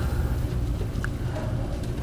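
A steady low background rumble with a faint single click about a second in.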